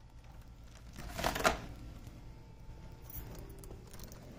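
A wooden interior door being opened by its brass knob: a short rustling rush about a second in, then a few light clicks near the end.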